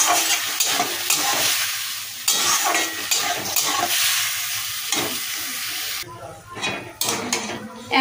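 Soaked mung dal sizzling as it fries in hot oil in a metal kadai, stirred with a spatula that scrapes the pan in repeated strokes. The sizzle dies down about six seconds in, leaving mainly the scraping of the spatula.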